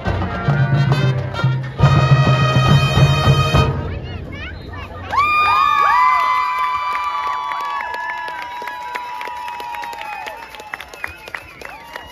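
High school marching band, brass and drums, playing its closing bars and ending on a long, loud held chord that cuts off at about four seconds. A stadium crowd then cheers, with long whoops and claps, fading toward the end.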